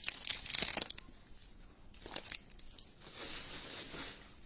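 Plastic wrapper of a trading card pack crinkling and tearing as it is pulled off the cards, with sharp crackles in the first second and a softer rustle about three seconds in.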